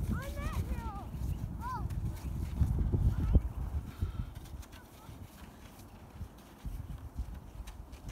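Children's voices calling out in short rising-and-falling cries during the first two seconds, over an uneven low rumbling noise that is loudest about three seconds in.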